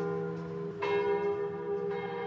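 Chiming bell tones in a short transition sting: a sustained ringing chord, struck again about a second in, and slowly fading.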